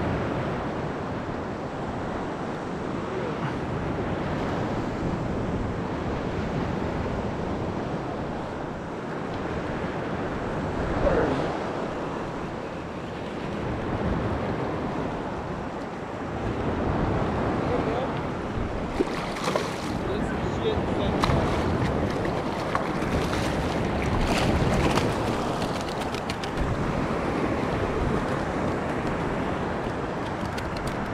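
Shallow surf water lapping and sloshing close to the microphone, with wind buffeting it. A run of sharp splashes comes in the second half.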